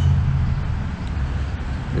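Low, steady engine rumble from a motor vehicle, easing off a little in the second half.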